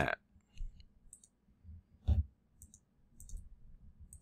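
Faint computer mouse clicks, a few scattered short ticks, with one louder short thump about two seconds in.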